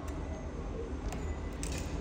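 Low steady background hum with a few faint, light clicks, such as small handling sounds on a workbench.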